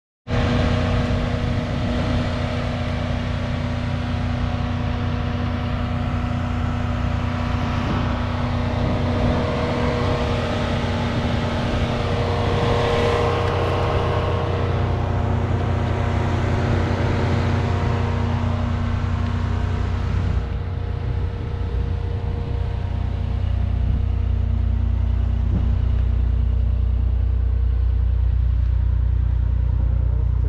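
Brabus-tuned Mercedes-Benz CLS engine idling steadily with a low rumble. About twenty seconds in, the higher sounds fall away and the deep rumble grows louder.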